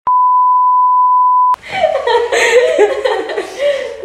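Television colour-bar test tone: a steady single-pitch beep about a second and a half long that cuts off abruptly, followed by people talking and laughing.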